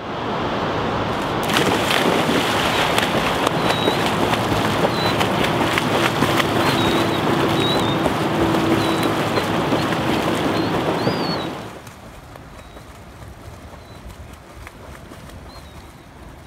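Loud, steady rushing noise of river water by a low dam spillway, with faint high chirps above it. The noise cuts suddenly to a much quieter background about twelve seconds in.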